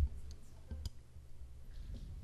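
A few faint, sharp clicks, the clearest just under a second in, over a low steady hum from the room's sound system.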